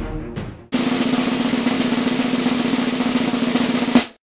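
Snare drum roll, starting suddenly under a second in and held steady for about three seconds before stopping abruptly at the end. It is a suspense roll leading up to a winner's announcement. Before it, the previous background music fades out.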